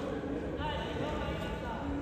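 Large sports hall ambience: a steady low rumble with faint distant voices.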